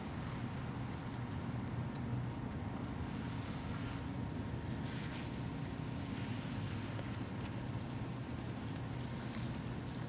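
A steady low mechanical hum, with scattered light crinkles and clicks from a clear plastic zip-top bag being handled.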